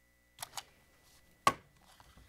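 Knocks and taps from handling things on a lectern, picked up by its microphone: two soft taps about half a second in, then one sharper knock about a second and a half in.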